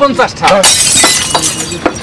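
A man's voice saying "thank you", then a sudden loud crash about half a second in, lasting roughly half a second.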